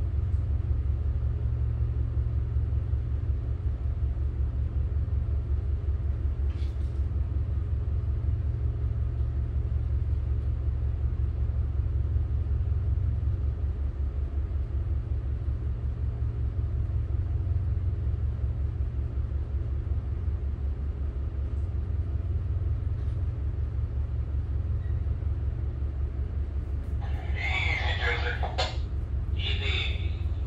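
Tugboat's diesel engines running steadily, heard inside the wheelhouse as an even low rumble.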